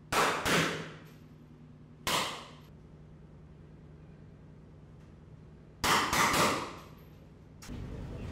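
Rifle shots fired inside a boat's cabin during a boarding drill, each with a short ringing echo: two shots at the start, one about two seconds in, then a quick string of three or four about six seconds in.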